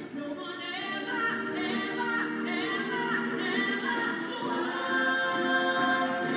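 Several voices singing together in sustained, held notes, growing louder through the passage.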